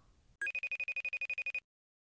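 Telephone ringtone sound effect: one rapid trilling ring, about a dozen pulses a second, lasting a little over a second and starting about half a second in.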